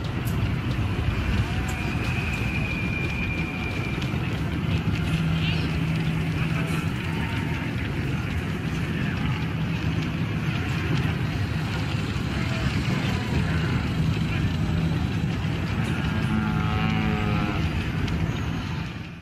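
Busy sci-fi town ambience: a steady, dense rumble like engines or machinery, with indistinct voices in the mix and a few short tones and warbling calls, one near the end.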